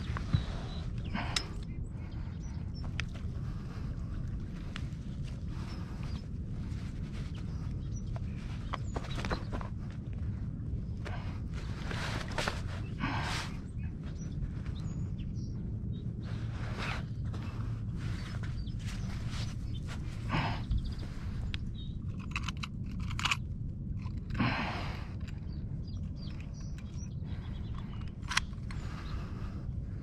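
Irregular rustling, crunching and scraping of a nylon landing net and fishing mat being handled as a caught carp is pulled free of the mesh, with a few sharper clicks and a steady low rumble underneath.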